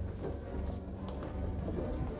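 Orchestral dance music playing, with a few sharp knocks through it.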